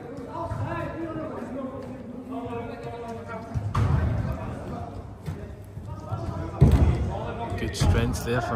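Players' voices calling and shouting across an indoor five-a-side pitch, echoing in a large hall, with a few dull thuds of a football being kicked, the loudest late on.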